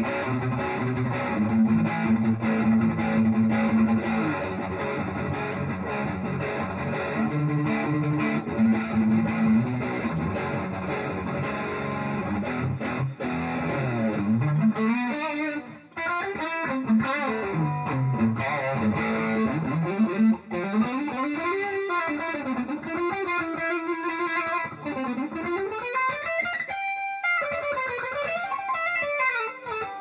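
Electric guitar with overdrive from a Zoom 505 II multi-effects pedal on its BG Drive patch. It plays a low riff for about the first half, then fast single-note lead runs that sweep up and down in pitch.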